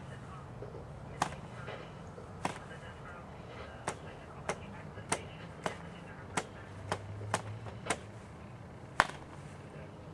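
Cox glow-plug model airplane engine, a small single-cylinder two-stroke on nitro fuel, being hand-flipped by its propeller: a sharp click with each flip, about eleven at uneven intervals. It is firing on the flips but not catching and running.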